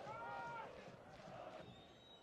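Faint open-air football stadium ambience with a brief faint voice calling out in the first half-second, then low background noise with a thin high tone near the end.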